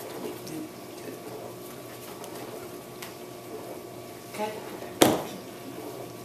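Quiet room noise, then one sharp smack about five seconds in, just after a brief vocal sound.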